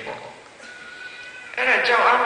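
A man's voice preaching over a microphone: a pause of about a second and a half, with a faint steady tone, before he resumes speaking near the end.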